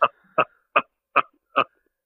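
A man laughing in five short, evenly spaced bursts, about two and a half a second.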